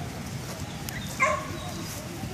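A dog gives one short bark about a second in, while dogs play together.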